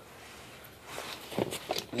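Faint handling noise from hands working the stripped end of a Cat5 cable: soft rustling with a few light clicks, one about a second in and two more in the second half.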